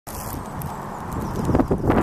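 Carp splashing and slapping at the water's surface as they crowd in to feed. The splashes come thicker and louder near the end, over a steady low rumble.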